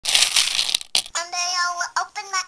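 A burst of hiss-like noise for most of a second, a sharp click, then a child's voice singing a long held note as a sung intro jingle begins.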